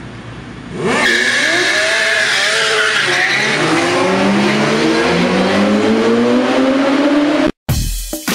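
Street traffic, then about a second in sport motorcycle engines rev loudly as the bikes pull away: the pitch dips, then climbs steadily for several seconds, and cuts off abruptly near the end.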